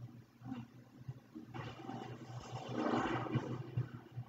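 Sound effect from an animated superhero episode played back quietly: a rough burst of noise that starts about a second and a half in, swells to its loudest around three seconds and fades just before the end, over a steady low hum.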